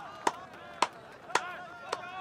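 Four sharp knocks, evenly spaced about two a second.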